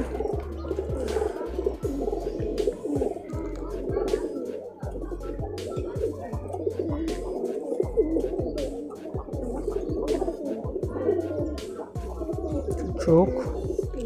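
Domestic pigeons cooing in a loft, several birds overlapping in a continuous, wavering murmur, with scattered clicks and handling noise close to the microphone.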